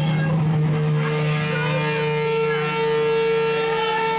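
Electric guitars and amplifiers holding a steady drone of several sustained notes, with higher tones sliding up and down in pitch above it.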